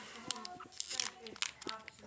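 Foil wrapper of a trading-card booster pack crinkling and tearing as it is ripped open with the teeth, a run of short sharp crackles.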